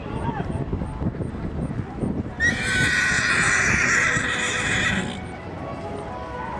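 A horse whinnying loudly for about two and a half seconds, starting about halfway through with a sharp rise and then holding a high, rough call before stopping abruptly.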